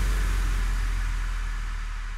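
The fading tail of a logo-intro sound effect's boom: a low rumble with a layer of hiss, dying away steadily.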